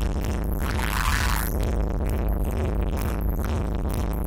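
Techno played live on drum machines and samplers: a loud, steady bass-heavy groove, with a short burst of hissing noise swelling about a second in and cutting off.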